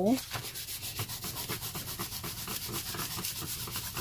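A cloth painting towel rubbed quickly back and forth over crayon lines on paper, smudging and blending them: a steady run of short scrubbing strokes.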